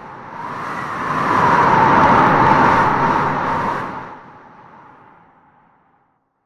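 Whoosh sound effect under the closing logo: a long swell of rushing noise that builds for about two seconds, peaks in the middle, then fades out near the end.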